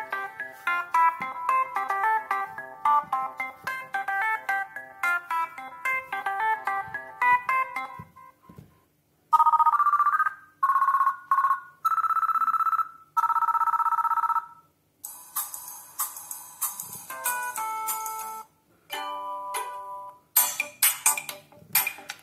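Preset ringtones previewed one after another through a Doro 8035 smartphone's loudspeaker, loud enough to judge the speaker's volume. First comes a melody of quick plucked notes for about eight seconds, then a two-tone electronic telephone ring in a run of short bursts, then several shorter tunes, each cut off as the next one is picked.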